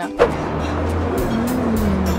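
Music over a steady car-engine drone that starts abruptly with a sharp hit just after the start, its pitch rising and falling in the second half.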